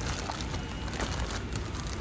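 Plastic-wrapped food-basket packs rustling and crinkling, with a few short crackles, as a hand tugs one out of a tightly packed shelf, over steady store background noise.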